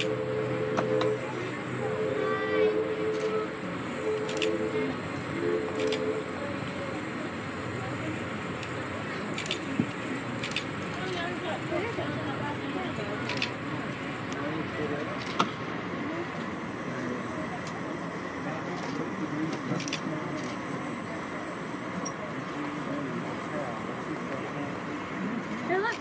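Steady rumble and rattle of a passenger train car rolling over the rails, heard from inside the car, with a few sharp clicks. In the first six seconds a steady horn-like chord sounds four times, the first blast long and the others short.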